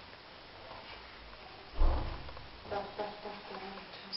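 A single dull thump about two seconds in, followed by a few brief spoken words.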